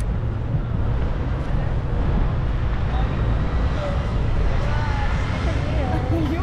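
Wind buffeting the camera's microphone, a steady low rumble outdoors on a city street. Faint voices come in during the second half.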